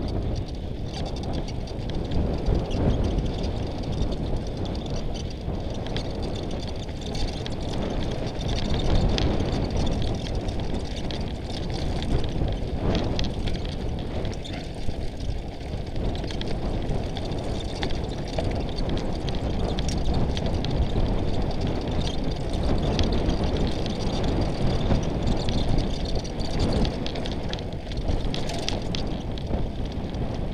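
Mountain bike riding fast down a rocky singletrack: tyres crunching over loose stones and gravel, with the bike rattling over rocks in a steady stream of clicks and knocks, under a constant rumble of wind noise on the microphone.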